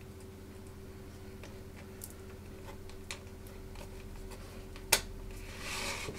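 Small clicks and taps of thin acrylic case panels being handled and fitted, with one sharper click about five seconds in and a brief rustle near the end, over a steady low electrical hum.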